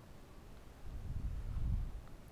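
A quiet pause holding a low, muffled rumble that swells from about half a second in and fades near the end.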